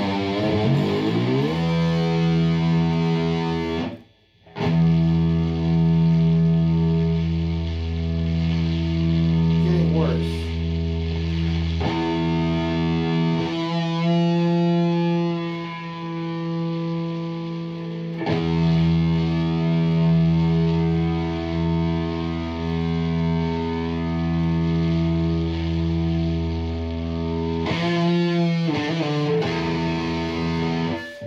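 Electric guitar played through a distortion pedal: long sustained chords left to ring, with a short break about four seconds in. Pitches slide down near the start and near the end, and one chord wavers in the middle.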